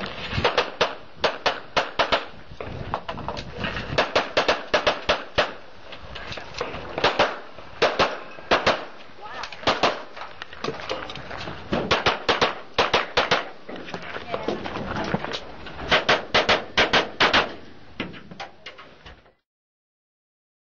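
Handgun shots fired in fast strings of several shots each, with short pauses between strings, during a timed practical pistol stage. Sound stops abruptly near the end.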